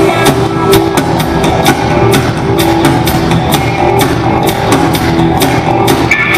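Live rock band playing loudly, with a steady drum-kit beat of about two hits a second over guitars and bass.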